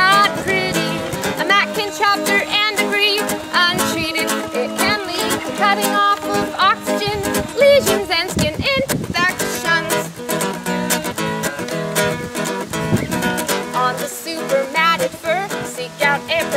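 Ukulele strummed as accompaniment to two women singing a song, the voices wavering with vibrato over the strummed chords.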